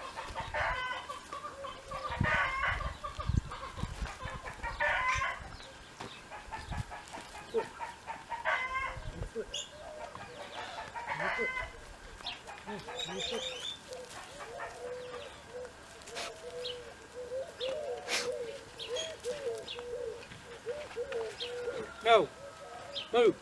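Chickens clucking and calling in short bursts every few seconds. A few sharp metal clicks come in the second half as a horseshoe is worked off a hoof with shoe pullers.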